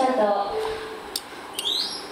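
Voices in the background, with a short, high rising chirp near the end.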